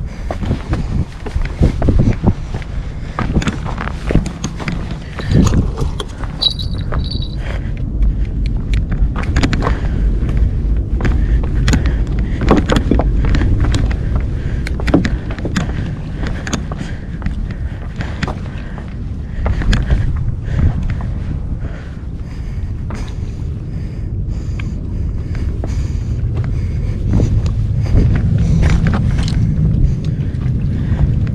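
Wind buffeting the microphone in a steady low rumble, with many sharp knocks and scrapes of footsteps on loose riprap rocks.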